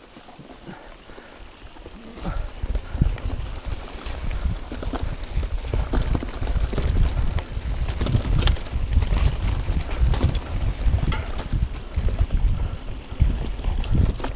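Mountain bike riding a dirt singletrack: a low rumble of tyres on the trail and wind on the microphone, with rapid rattles and knocks from the bike over bumps. It is fairly quiet at first and turns loud about two seconds in.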